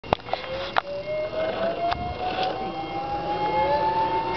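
Zip-line trolley pulleys rolling along a steel cable: a steady whine that rises slowly in pitch as the rider gathers speed. A few sharp clicks come in the first second and again about two seconds in.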